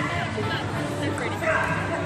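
A dog barking, over speech and music in the background.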